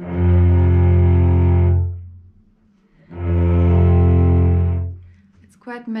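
Cello playing two long, low bowed notes of about two seconds each, with a short pause between: double stops, two strings sounding a fifth together, the left hand's finger laid across both strings.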